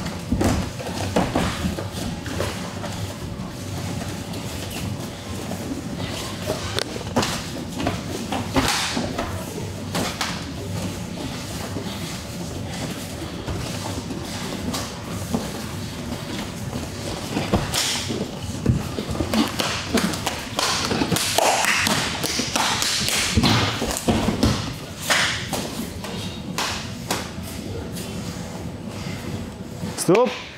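Irregular thuds and slaps of gloved punches, kicks and bare feet on the cage mat during MMA sparring. The hits come more often in the second half.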